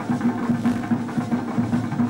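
Live gwoka drumming: rapid hand strokes on ka drums in a quick, steady rhythm.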